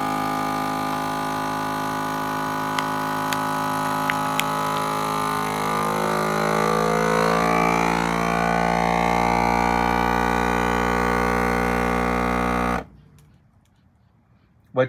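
FoodSaver vacuum sealer's pump running in a steady drone as it evacuates a bag around two filet steaks, with a few faint ticks from the bag early on. Its tone shifts partway through as the bag pulls tight around the meat, and the machine cuts off suddenly near the end when the vacuum-and-seal cycle completes.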